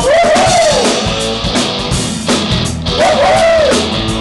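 Live rock band playing: guitars over a drum kit, loud and steady. A pitched lead line swells up and falls back twice, near the start and again about three seconds in.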